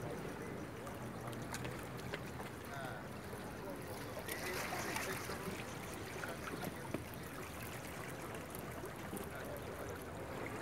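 Calm sea water lapping gently against shoreline rocks, a steady low wash, with faint distant voices in the background.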